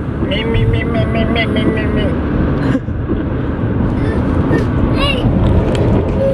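A small child's high voice babbling and chattering over the steady road and engine rumble inside a moving car's cabin.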